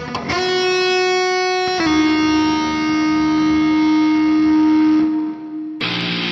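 Starcaster electric guitar played through a Boss IR-200 amp-and-cabinet simulator: a picked single note rings for about a second and a half, steps slightly lower and is held with long sustain for about four seconds, then a new note is picked near the end.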